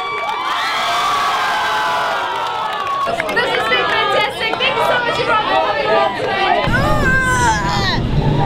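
A large crowd of teenagers cheering and shouting over one another.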